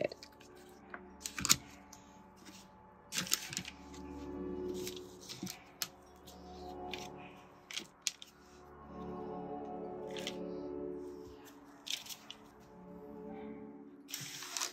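Soft background music, with scattered light clicks and knocks as plastic mixing cups and silicone molds are moved about and set down on a work table.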